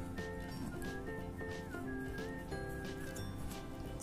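Background music: a gentle melody of held notes, steady and fairly quiet, with one note sliding down and back up about halfway through.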